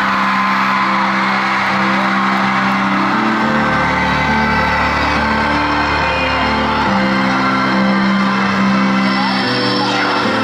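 Slow, sustained piano chords played live in an arena, changing every second or two, while the crowd cheers and whoops over them.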